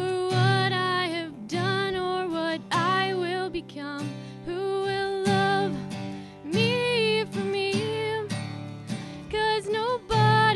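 Acoustic guitar strummed in steady chords under a solo singer's slow melody of long held notes, a live vocal performance into a microphone.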